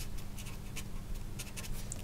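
A pen writing by hand on paper, a run of short, irregular scratching strokes as a word is written out.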